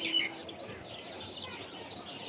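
Small birds chirping in the background: many short, high chirps overlapping and repeating throughout.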